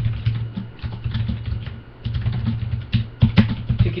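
Typing on a computer keyboard: a run of quick, irregular keystrokes, with a louder burst of clatter just after three seconds in.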